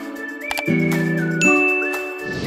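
Light, cheerful background music, with a sharp click about half a second in and then a bright ding about a second and a half in: a subscribe-button tap and notification-bell sound effect.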